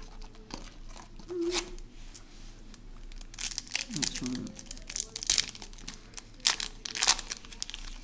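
Foil wrapper of a Yu-Gi-Oh booster pack being torn open and crinkled by hand: a run of sharp crackles and rips through the second half, loudest in three snaps near the end.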